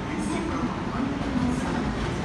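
JR Osaka Loop Line electric train running in toward the station platform, a steady rumble of wheels and motors, with a voice over it.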